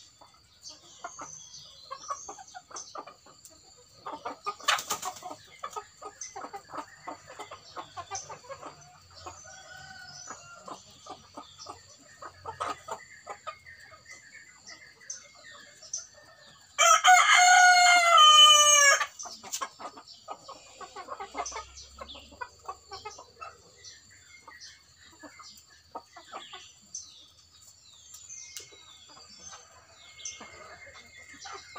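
Ayam kampung super chickens foraging, with scattered short clucks and taps and a brief sharp sound about five seconds in. About seventeen seconds in, a rooster crows once, loudly, for about two seconds, its pitch falling at the end.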